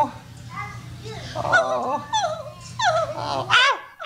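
A puppeteer's voice making a run of high, whimpering squeals without words, several cries sliding up and down in pitch. The last cries near the end climb steeply.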